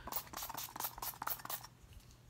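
Makeup setting spray pumped onto the face from a fine-mist spray bottle: a quick run of about eight to ten short spritzes over a second and a half.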